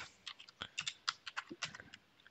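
Typing on a computer keyboard: a quick, uneven run of keystroke clicks, several a second.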